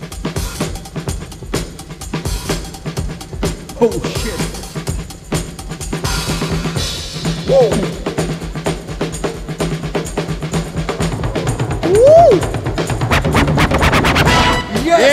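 Hip-hop breakbeat music played loud over the hall's sound system for the dancer: a busy drum-kit beat of fast kick, snare and hi-hat hits, with a few short rising-and-falling pitch sweeps.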